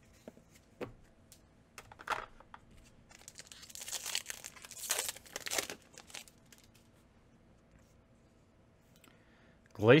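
Foil booster-pack wrapper crinkling for about two and a half seconds in the middle, loudest about five seconds in, after a couple of light clicks of cards being handled.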